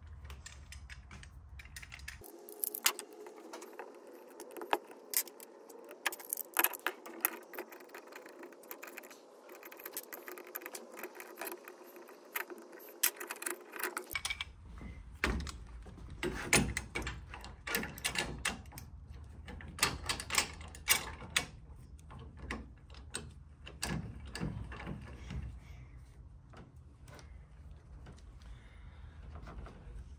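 Metal parts clicking, clinking and tapping by hand as a steel clamp holder is screwed onto a cordless beading machine and the machine is clamped to a scaffold tube. The sharp, irregular clicks run throughout, over a faint steady hum for several seconds in the middle.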